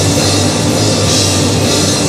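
Live rock band playing loud: electric guitar, bass guitar and drum kit, with the cymbals ringing steadily over the top.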